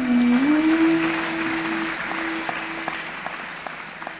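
Audience applauding over a held low note on the bansuri and a steady drone. The clapping fades over a few seconds and thins to a few scattered claps near the end.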